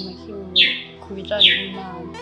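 A bird's repeated chirp, each a short downward sweep, heard twice, over soft background music with held notes.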